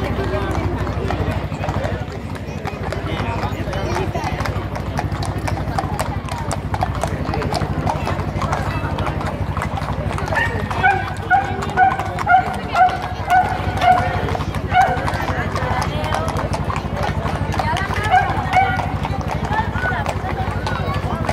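Several horses' hooves clip-clopping at a walk on stone paving, over a crowd's chatter. About halfway through, a run of about ten short, evenly spaced high notes, roughly two a second, stands out as the loudest sound, and a couple more come near the end.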